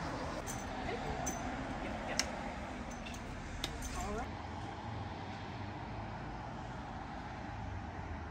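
Steady rumble of road traffic crossing the Linn Cove Viaduct, with a few light metallic clinks in the first few seconds.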